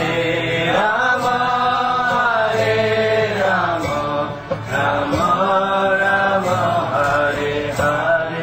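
A devotional chant sung in phrases of about two seconds, the melody rising and falling over a steady low drone.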